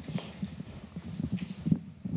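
Soft, irregular knocks and bumps from a floor-standing microphone as it is carried across the room, its stand and body knocking as it moves.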